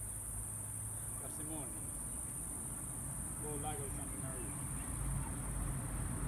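Steady, high-pitched chorus of insects such as crickets in summer meadow grass, with a few faint voices and a low rumble underneath.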